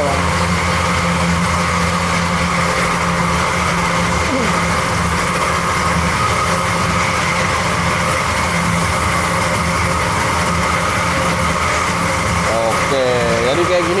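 Electric pig-feed mixing machine running with a steady hum while freshly mixed feed is discharged through its chute into a sack.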